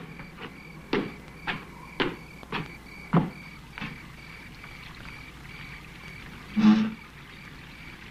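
Footsteps on brick paving, about two a second, for the first four seconds or so. A steady pulsing chirp of crickets runs underneath, and a single louder thump comes near the end.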